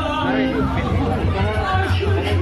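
A man's voice speaking loudly through a public-address microphone, with music playing underneath.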